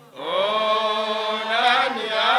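Men chanting a Swahili qaswida into microphones, voices only: a brief breath-pause at the start, then a new long sung phrase with the pitch bending up and down.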